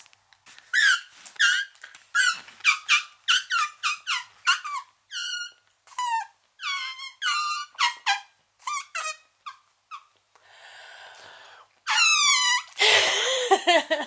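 A rapid run of short, high-pitched squeaks made with the mouth as a playful private 'code language', several a second, each dropping in pitch. A soft hiss comes about ten seconds in, then one louder squeak and laughter near the end.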